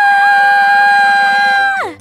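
A woman's long, loud scream of dismay held on one high pitch, sliding up at the start and dropping away just before the end.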